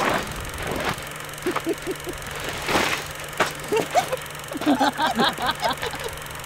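A man making short wordless vocal sounds, with scuffs and rustles in between, over a steady low hum. The vocal sounds come thickest near the end.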